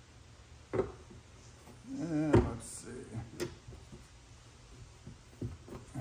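A few sharp clicks and knocks as the end fitting of a gas hood strut is twisted and pressed onto its ball stud, the loudest about two and a half seconds in. A short grunt comes just before it.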